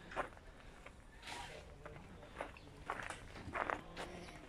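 Irregular footsteps on snowy ground: a handful of short, scattered scuffs.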